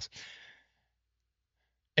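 A man's short, breathy sigh or intake of breath lasting about half a second, followed by near silence.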